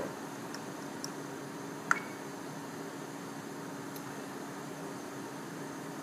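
Steady fan hum and hiss of room equipment, with a few faint clicks and one sharper click about two seconds in from the monitor's rotary navigation knob being turned and pressed.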